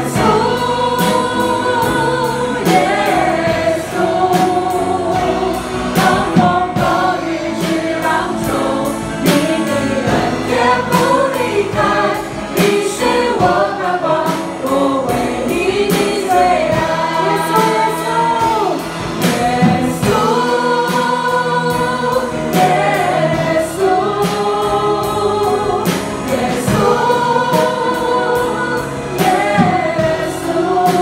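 Church worship team singing a praise song together into microphones, backed by a band with a steady beat.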